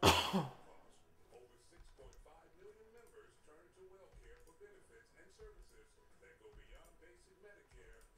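A short, loud sigh from a man right at the start, then a quiet room with a faint murmur of voice and light computer-mouse clicks repeated every second or so.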